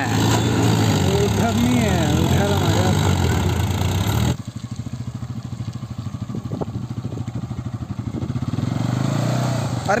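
A tractor engine running, with voices calling over the rush of water for the first four seconds. Then an abrupt change to a motorcycle engine running with a quick, even beat, a little louder near the end, as the bike is worked through deep mud.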